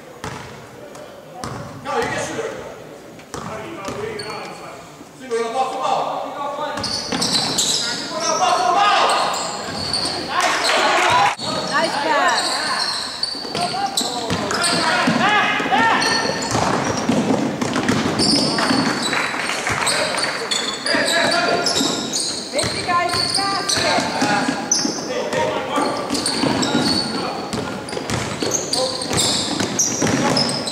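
A basketball dribbling on a hardwood gym floor amid players' and spectators' indistinct shouting, echoing in a large gym. It is fairly quiet for the first few seconds, then busier from about seven seconds in as play gets going.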